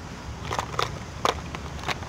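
Hands handling fishing tackle close to the microphone while changing a soft lure: a few light, irregular clicks and rustles over low steady background noise.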